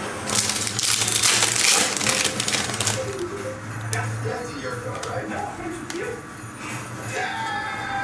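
Stiff trading cards being handled and slid against one another in the hands: a rattling, rustling clatter of clicks for the first few seconds, then quieter handling. A television's music and voices play faintly underneath.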